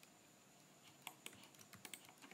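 Faint, scattered clicks of a computer keyboard and mouse over near silence, a few of them between about one and two seconds in.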